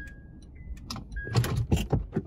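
Inside a car that has just been parked: a few short electronic beeps at slightly different pitches, then a quick run of loud clicks and rattles.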